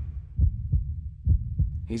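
Low, heavy thuds in a heartbeat-like rhythm, two quick beats at a time with the pairs about a second apart: a tension-building soundtrack effect.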